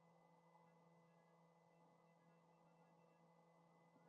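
Near silence: faint steady electrical hum from the recording setup.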